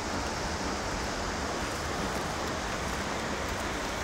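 Steady rushing noise of the distant Seljalandsfoss waterfall, with wind rumbling on the microphone.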